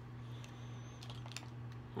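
A few faint clicks and taps of cosmetic bottles and packaging being handled, over a steady low hum.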